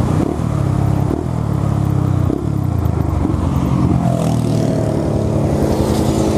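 Yamaha Fazer 250 single-cylinder motorcycle engine heard from the bike itself. Its note breaks twice in the first couple of seconds, then falls slowly as the bike slows to a stop.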